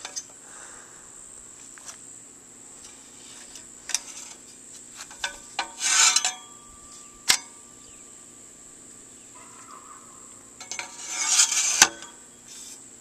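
A hand handling a metal solar-panel mount, with light metal clinks and rubbing on the rails and bracket, loudest about halfway through and again near the end. A steady high-pitched insect drone runs underneath.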